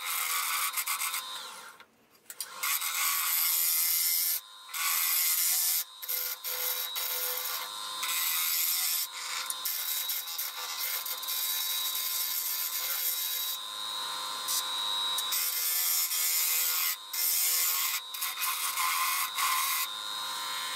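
A gouge cutting a spinning wood spindle blank on a lathe: a steady hissing shear of shavings that stops for a moment several times as the tool comes off the wood, most fully about two seconds in. A faint steady hum of the running lathe lies underneath.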